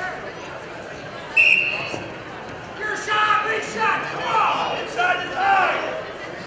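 A short, loud referee's whistle blast about a second and a half in, starting the wrestlers in neutral. It is followed by coaches and spectators shouting in a gym.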